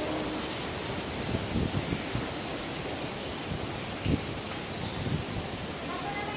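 Steady hiss of heavy rain heard from under shelter, with a few soft low thumps, the loudest about four seconds in.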